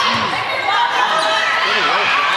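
Many high voices cheering and yelling together in a gymnasium, from players and spectators, after a point is won in a volleyball rally; the sound rises suddenly just before and holds loud and steady.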